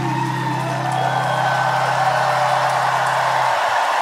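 The band's last chord of a pop ballad is held and cut off about three and a half seconds in, while the open-air audience cheers and whoops.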